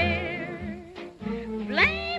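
Closing bars of a 1938 swing dance-band recording in fox trot tempo: held, wavering notes, a short dip about a second in, then a note sliding steeply upward near the end.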